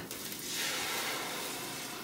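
Water poured into a hot stainless skillet of shallots sautéing in olive oil, hissing and sizzling as it hits the pan. The hiss swells about half a second in and eases off near the end.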